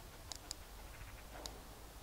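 A few faint, sharp clicks from the plastic handset and receiver of a remote dog-training e-collar being handled, with buttons pressed while trying to pair the two units.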